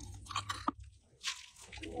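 Mouth sounds of biting and chewing candy: a few quiet, crisp crunches in the first half, a short pause, then one more crunch.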